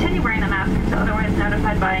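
A flight attendant's safety announcement over the cabin PA, over the steady low drone and hum inside a Boeing 737-700 cabin as the airliner taxis.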